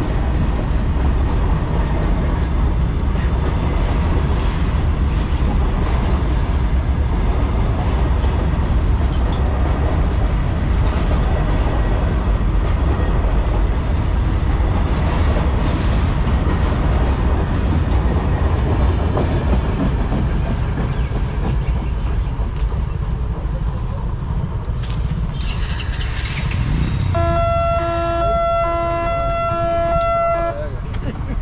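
Freight wagons of a long goods train rumbling and rattling over the rails through a level crossing, easing off as the last wagon and brake van go by. Near the end a steady horn sounds for about three seconds.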